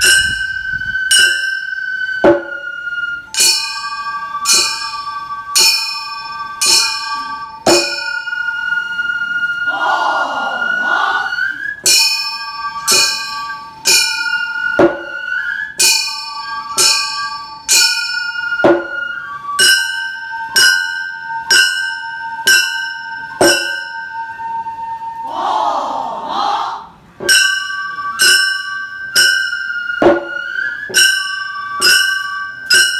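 Gion bayashi festival music: small hand-held kane gongs struck in a steady, repeating clanging rhythm (the 'konchikichin'), under transverse bamboo flutes holding long notes.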